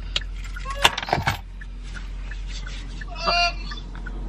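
Two short bursts of a person's voice over a low steady hum: a sharp, clipped one about a second in, and a brief pitched call a little after three seconds.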